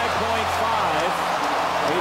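A man's voice commentating over a steady, loud arena crowd.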